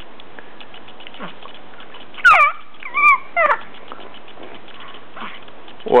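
A baby's short high-pitched squeals, a few of them between about two and three and a half seconds in.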